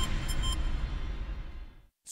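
Closing theme music of a TV newscast, with sustained tones that fade out and drop to silence just before the end.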